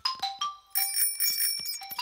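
A child's bicycle bell rings twice, its tones holding on, over light cartoon music.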